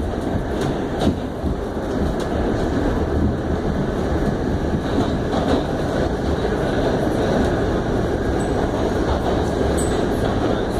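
R68 subway train heard from inside the car as it runs through a tunnel: a steady rumble of wheels on rail, broken by a few sharp clicks.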